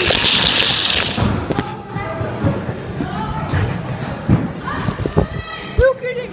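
Loud rushing rub of a phone being handled for the first second, then muffled voices and a few sharp knocks as it is moved about.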